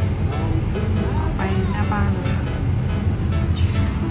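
Music over the steady low rumble of a car on the move, heard inside the cabin.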